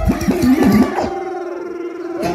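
A DJ's changeover between reggae tunes: the bass drops out, pitched sounds glide up and down for about a second, then a single steady tone holds for the rest.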